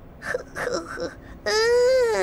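A Teletubby's high childlike voice: a few short sounds, then about a second and a half in a long drawn-out "oooh" that rises a little and then begins to fall.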